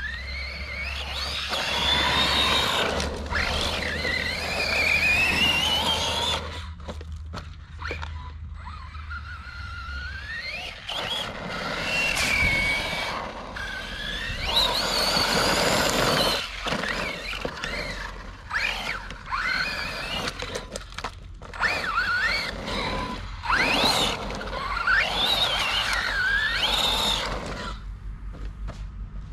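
Brushless electric motor of an RC trophy truck whining, its pitch rising and falling over and over with the throttle, over the noise of tyres on loose dirt. A few short knocks come through now and then.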